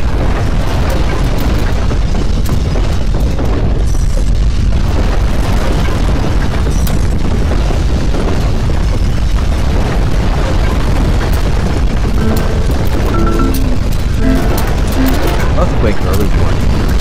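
Loud, continuous deep rumble of an earthquake sound effect, steady throughout, under background music. A run of short steady tones starts about twelve seconds in.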